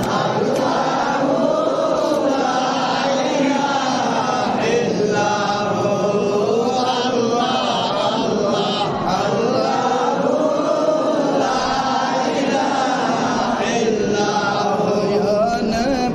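Men chanting together in a slow, continuous melody: the devotional salutation to the Prophet recited while standing at the qiyam of a milad.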